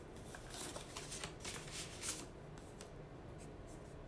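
Paper letter sheets rustling faintly as several pages are handled, a run of soft crackles over the first two seconds or so, then quieter.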